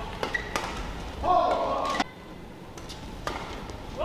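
Badminton rackets striking a shuttlecock in a rally, several sharp cracks. About a second in comes a loud burst of shouting voices, the loudest sound, which stops abruptly halfway through.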